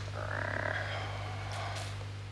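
Steady low electric hum from an idle guitar amplifier. A short mid-pitched sound comes about a quarter second in and lasts about a second, and a couple of faint clicks follow near the end.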